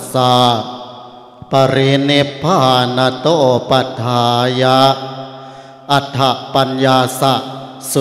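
A Buddhist monk chanting Pali in a slow, sung male recitation into a microphone: the formal Pali preamble that opens a Thai sermon, counting the years since the Buddha's parinibbana. The chanting breaks for a breath about a second in and again near the fifth second, then resumes on long held notes.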